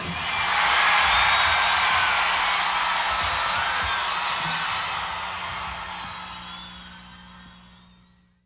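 Recorded crowd screaming and cheering as the song's last chord cuts off, over a steady low held tone. It starts loud and fades out gradually to silence.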